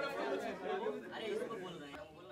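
Indistinct chatter: several people talking at once in a room.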